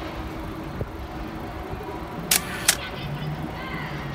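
City street ambience with a steady background of traffic noise. A little past halfway come two sharp clicks close together, and a low hum sets in near the end.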